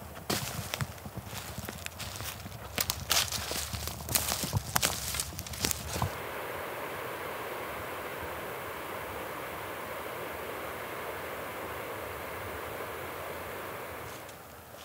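Footsteps crunching through dry leaf litter and twigs for about six seconds. Then the sound switches suddenly to the steady hiss of a creek flowing.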